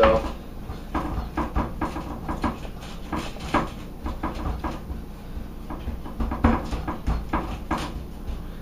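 Hands pressing and patting a layer of ground pork flat in a foil-lined baking pan: the aluminium foil crinkles and the meat and pan are tapped in an irregular run of small clicks and rustles.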